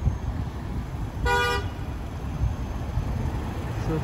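A car horn toots once, briefly, about a second in, over steady low road-traffic noise.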